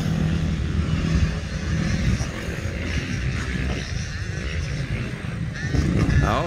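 Motocross dirt bike engine running on the track, its pitch rising and falling as the rider works the throttle.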